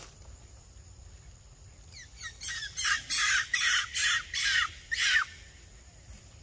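A quick run of about seven loud, harsh animal calls, two or three a second, each dropping in pitch at its end. The run starts about two seconds in and stops about five seconds in.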